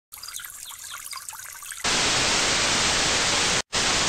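Television static used as a channel-intro sound effect. A fainter crackly hiss gives way about two seconds in to a loud, even burst of white-noise static, which cuts out for an instant just before the end and then resumes.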